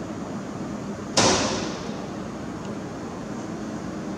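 A single loud, sharp bang about a second in, fading away over about half a second, over a steady low hum.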